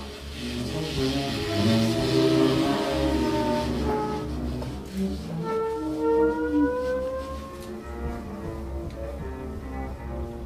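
Free-improvised music by cello, double bass, trumpet and tenor saxophone: a dense, loud tangle of overlapping notes in the first few seconds, then a long held note sliding slowly upward about halfway through.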